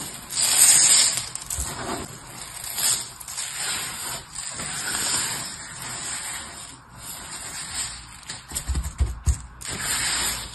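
Dry crushed soap crumbs being crumbled between fingers, sprinkled and pressed flat by hand: a dry rustling that swells and fades, loudest about a second in. A few soft low thumps come near the end.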